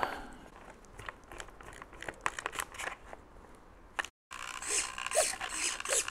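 Faint clicks from handling, then, after a cut about four seconds in, a small RC hobby servo whirring in short back-and-forth runs as a servo tester drives it, its gears buzzing as it moves the glider's elevator pushrod.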